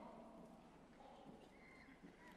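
Near silence: faint room tone of a large hall.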